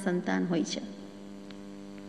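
A woman's speaking voice breaks off less than a second in, leaving a steady electrical mains hum: a constant buzz made of several evenly spaced tones.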